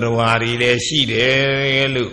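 An elderly Buddhist monk's voice reciting from a book in a slow, chanted intonation, with two long drawn-out phrases held on a steady pitch.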